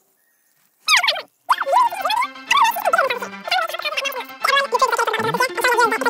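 Near silence for about a second, then a quick falling glide. After that come high-pitched, squawky voices over music with held low notes, sped up far above normal pitch.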